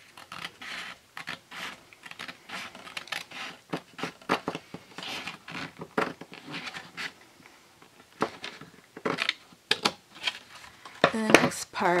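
Scissors cutting through cardstock: an irregular run of short, crisp snips with light paper rustle.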